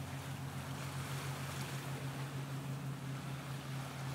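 A steady low hum under an even rushing noise, typical of wind on the camera microphone outdoors.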